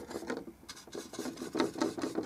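Bristle paintbrush scrubbing through thick oil paint, a quick series of short scratchy strokes at about three to four a second.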